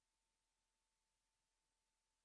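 Near silence: the audio feed is all but dead.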